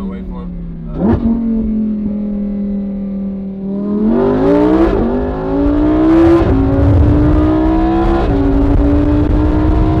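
Lamborghini Huracán's naturally aspirated V10 engine heard from the open cockpit: a steady drone with a short blip about a second in, then from about four seconds in hard acceleration, the pitch climbing and dropping sharply at each upshift, about every one and a half seconds.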